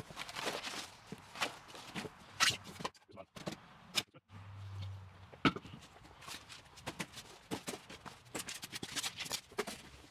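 Cardboard packing being handled and pulled out of a shipping box: rustling and scraping of cardboard with scattered sharp knocks.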